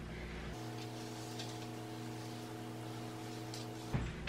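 Room tone: a low steady hum with faint hiss, which changes abruptly about half a second in, and one soft click near the end.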